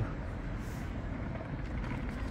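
Steady low rumble of outdoor street background noise, heaviest in the bass, with no distinct events.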